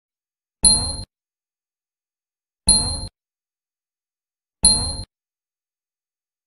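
Three identical short ding sound effects about two seconds apart, each with a high ringing tone that fades quickly. They go with an animated cursor clicking the Like, Subscribe and Share buttons in turn.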